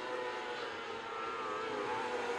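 Several winged 600cc micro sprint car engines running at high revs together, a steady high-pitched drone whose pitch wavers slightly up and down as the cars go through a turn.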